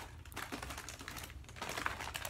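Faint, irregular small clicks and light crinkling from snack packaging being handled.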